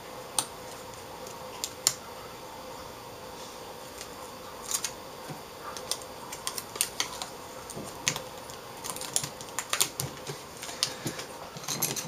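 Irregular small clicks and crinkles of aluminium foil tape being handled and pressed onto the sheet-metal back of an LCD panel, two isolated clicks at first, then a busy run of them from about halfway through.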